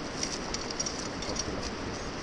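Steady rushing noise of wind on a body-worn action camera's microphone, with a few faint, quick high clicks in the first second and a half.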